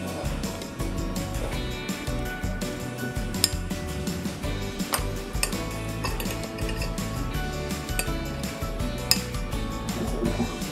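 A metal spoon clinking against a ceramic plate as it cuts through a slice of milk custard pie, with a few sharp clinks, the loudest about three and a half and nine seconds in. Background music plays under it.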